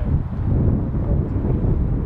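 Wind buffeting the microphone: a loud, low, fluttering rumble with no other clear sound over it.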